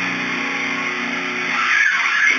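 Distorted electric guitar holding one sustained note or chord, with a brief scraping, sweeping noise near the end.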